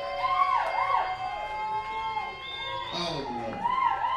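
Live rock band holding out the end of a song: a sustained chord with swooping, wavering high notes gliding over it.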